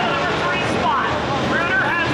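Dirt-track modified race cars running at speed around the track, a loud steady engine din with rising and falling pitch as the cars pass.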